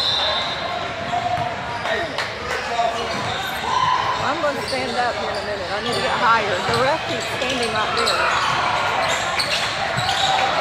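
Basketball bouncing on a hardwood gym floor, mixed with voices of players and spectators, echoing in a large hall.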